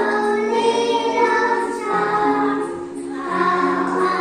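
A song sung by a group of children's voices together with a woman's voice over instrumental backing, in long held notes.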